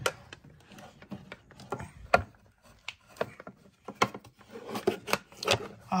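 Irregular clicks, taps and rubbing of an e-bike battery charger and its cable being handled, with short quiet gaps between.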